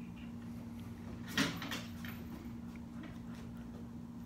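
A dog's feet shifting on a plastic step platform and foam balance pads: one sharp knock about a second and a half in, followed by a couple of faint ticks. A steady low hum runs underneath.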